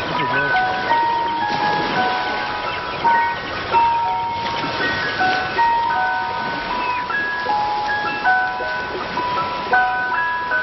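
An ice cream van's chime playing a tune of short, clear notes that step up and down in pitch.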